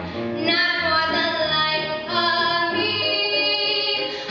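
A young female singer performing a musical-theatre solo, singing a phrase of long held notes.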